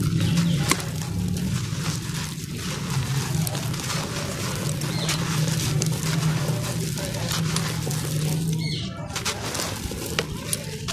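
Dry sand-cement chunks crumbling and crunching under the fingers: a continuous gritty crackle with scattered sharp snaps, over a steady low hum.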